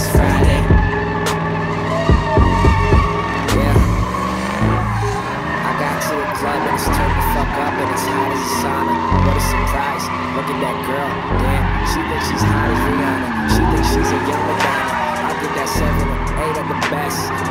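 Car tires squealing and the engine revving as a car spins donuts on asphalt, with a hip-hop track playing over it and crowd voices.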